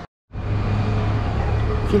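Street traffic: a motor vehicle's engine running with a steady low hum. It starts after a moment of silence at the very beginning.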